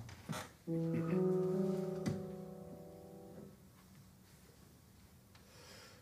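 Piano playing a few sustained chords, held and dying away over about three seconds, then quiet: the opening before the singers come in.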